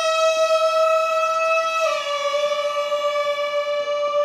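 A gagaku wind instrument holds one long, reedy note of Shinto ritual music. The note steps slightly down in pitch about two seconds in.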